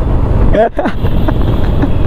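Wind rushing over the microphone of a motorcycle on the move, with road and engine noise underneath. A person laughs briefly a little after half a second in.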